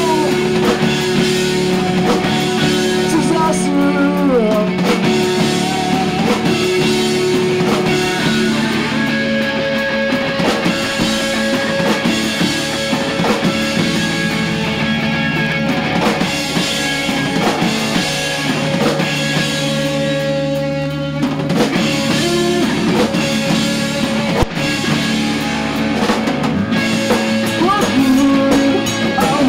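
Live rock band playing an instrumental passage: electric guitars with long held notes over a drum kit.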